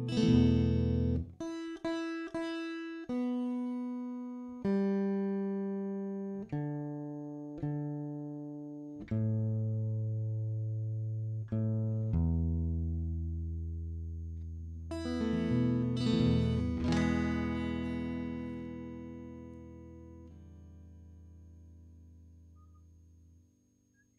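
Solo guitar: a run of single notes and chords, each plucked and left to ring, stepping mostly downward in pitch to a long low note, then a strummed chord about fifteen seconds in that rings out and slowly fades.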